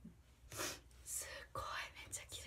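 Soft whispering: a few short, breathy whispered words.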